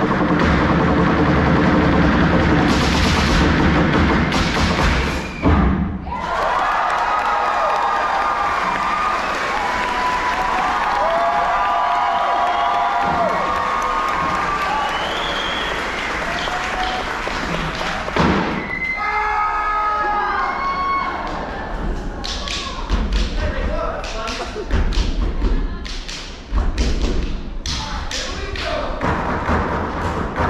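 Live stage percussion show in a theatre: loud music with heavy bass for the first few seconds, then voices calling out over a quieter bed, then a run of sharp percussive hits and thumps in the last third.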